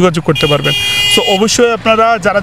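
A vehicle horn sounds once, a steady high tone lasting about a second, over a man talking.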